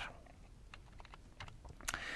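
A few faint, scattered clicks over low room tone, the sharpest one near the end.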